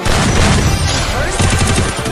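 Rapid gunfire sound effects mixed into an edited music soundtrack, with a fast burst of shots in the second half.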